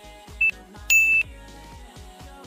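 Two electronic beeps from a quiz countdown timer, a short one then a longer one a half-second later, marking time running out. Background music with a steady beat plays underneath.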